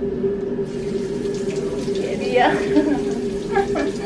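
Water running from a wall-mounted kitchen tap as hands are rinsed under the stream; the flow comes on under a second in, over a steady hum.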